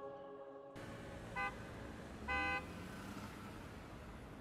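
City street traffic noise with two car horn toots, a very short one about a second and a half in and a slightly longer one about a second later.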